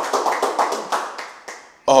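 A few people clapping, a quick patter of claps that fades away over nearly two seconds; a man's voice takes up again just at the end.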